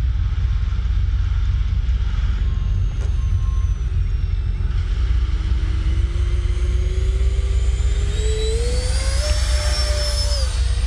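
Electric ducted-fan whine of a Freewing JAS-39 Gripen 80mm RC jet in flight, rising steadily in pitch through the second half and then holding, over a steady low rumble.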